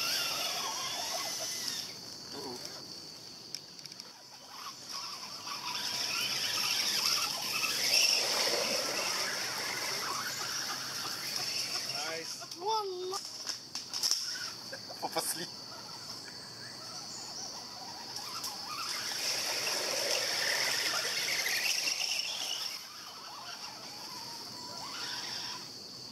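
Whine of RC scale crawler trucks' small electric motors and gears, rising and falling with the throttle, over a steady high-pitched insect drone.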